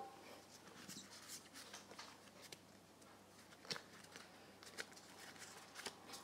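Faint rustling and a few light clicks of trading cards being handled, close by in a small room.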